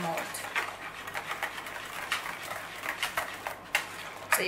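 Wire whisk beating a thin ketchup-and-sorrel sauce in a plastic bowl: a rapid, uneven run of light clicks against the bowl with liquid swishing.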